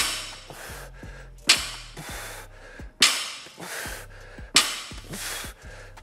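Loaded barbell with bumper plates touching down on a wooden lifting platform four times, about every second and a half, in rhythmic touch-and-go deadlift reps; each knock trails off briefly. Faint background music underneath.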